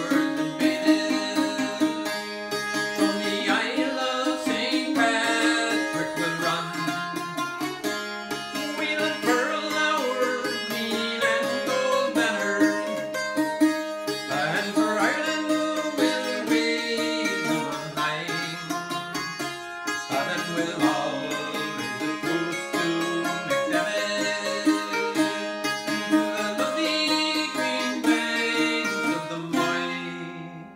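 Irish bouzouki, the flat-backed kind with doubled steel strings, picked and strummed in a traditional Irish folk song.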